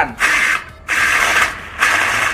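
Battery-powered grass trimmer (Xenon CDGT800) running briefly with no load, its electric motor spinning the metal blade with a humming whir. It runs in two short bursts: one right at the start, and the next starting near the end.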